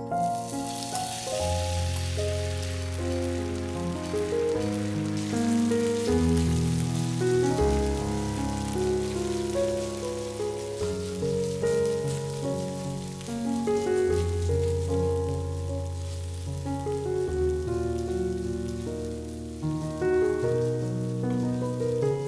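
Shredded potato sizzling in hot oil in a frying pan, the hiss loudest as the potatoes go in at the start and easing off after a few seconds. Piano music plays underneath throughout.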